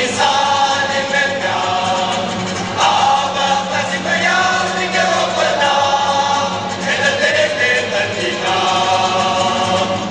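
Cape Malay male choir singing a comic song (moppie) in full voice, a lead singer with the choir behind him, over string-band accompaniment. The phrases are sung in held notes that change every second or so, with no break.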